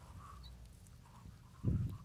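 Quiet low rumble with a single dull thump near the end.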